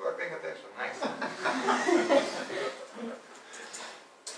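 A small audience laughing and talking, several voices overlapping, loudest about a second or two in.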